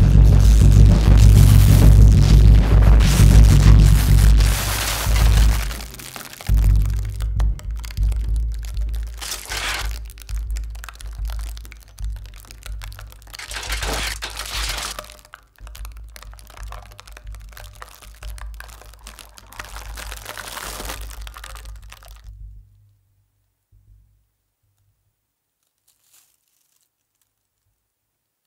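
Free-improvised drum kit and snare with live electronics, loud and dense for about the first five seconds, then thinning into sparse crackling and crunching textures, including crinkled foil, that die away about 22 seconds in, ending the piece.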